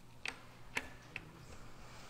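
Three faint, short clicks about half a second apart over a low steady hum.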